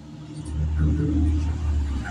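A motor vehicle's engine running, a low rumble that swells about half a second in and holds steady.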